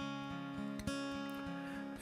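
Acoustic guitar played softly, chords left ringing, with a fresh strum about a second in.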